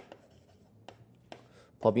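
Chalk writing on a chalkboard: faint scratching with a few light taps of the chalk against the board.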